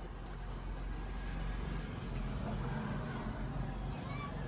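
A steady, low engine rumble, like a vehicle idling close by.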